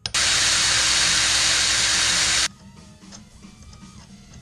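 A pressurised spray hissing loudly and steadily for about two and a half seconds, starting and cutting off abruptly.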